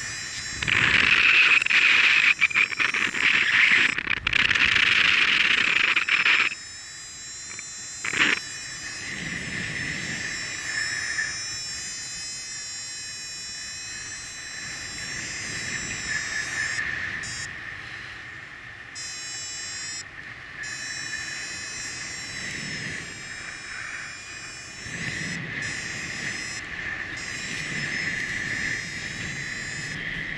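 Wind rushing over the microphone of a paraglider in flight, loudest for the first six seconds. After that a steady, high buzzing tone sounds under softer wind, swelling and fading until the end.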